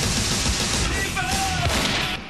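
Action-promo sound effects: a loud explosion and rapid gunfire, mixed with music.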